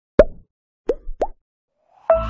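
Three cartoon plop sound effects, each a quick pop that bends up in pitch. The first stands alone; the last two come close together.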